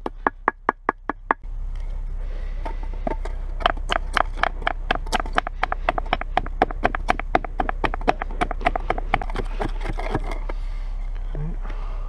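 Wooden stick pounding on a flat stone, sharp knocks about five a second, crushing a whole mouse, bones included. After a cut, softer rapid pounding at about the same pace as the stick mashes chokecherries in a small cup, slowing near the end.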